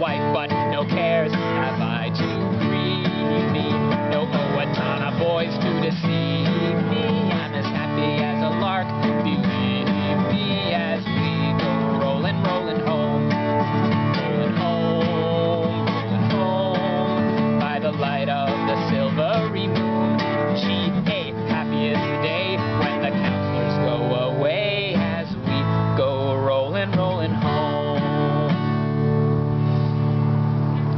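Acoustic guitar strummed in a steady rhythm, playing the chords of a simple folk song.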